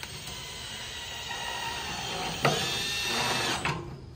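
Cordless drill driving a screw through a metal bracket into a wooden post: the motor runs steadily at first, then jumps louder and higher-pitched about two and a half seconds in, and stops shortly before the end.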